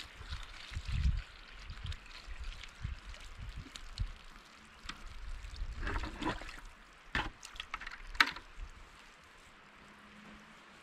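Irregular scuffs, rustles and knocks of handling a plastic tote and bucket on a wood-chip compost pile, with a scraping burst about six seconds in and sharp clicks near the end, the loudest about eight seconds in.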